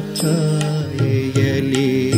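Kannada light-music song (bhavageethe): a sung line with wavering vibrato over sustained instrumental accompaniment.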